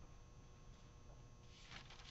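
Near silence, then a brief soft paper rustle near the end as pages of a Bible are turned.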